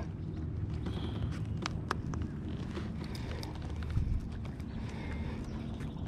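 Handling noise on a plastic fishing kayak: scattered light clicks and knocks over a low rumble, with a duller thump about four seconds in.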